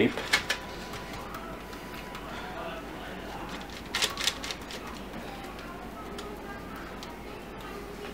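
A few light clicks and taps of a wire whisk on a parchment-lined baking sheet as dough is pressed into a pizza shape: a couple just after the start and a short cluster about four seconds in, over a faint steady background.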